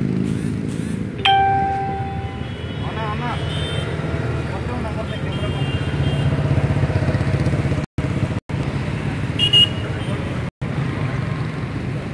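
Steady traffic rumble on a city road, with a vehicle horn sounding for about a second, about a second in, and shorter, higher-pitched horn beeps later. Faint voices in the background, and the sound cuts out briefly three times near the end.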